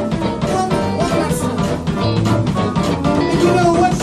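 Live blues band playing a boogie-woogie number: electric guitars over a steady drum-kit beat, with the end of a sung line at the start.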